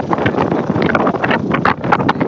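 Strong wind buffeting the microphone in irregular gusts, over a Citroën C3 Picasso's HDi diesel engine idling with the bonnet open.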